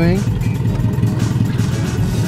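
Nissan 240SX S13's engine idling through an open header with no exhaust behind it: a loud, steady low rumble of rapid pulses, heard from inside the cabin.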